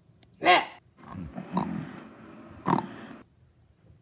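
Pug dog close to the microphone: a short call about half a second in, then a couple of seconds of noisy snuffling breath with two more short calls, stopping a little after three seconds.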